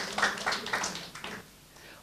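Audience applause, many hand claps together, thinning out and dying away about a second and a half in.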